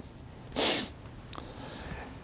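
A person's short, sharp breath noise about half a second in, a single hissy burst lasting about a third of a second.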